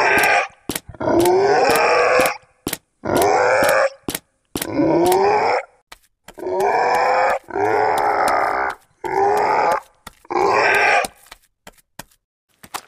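A gruff creature voice, the goblin character's, grunting and groaning in about eight short bursts of roughly a second each. Sharp clicks fall between the bursts.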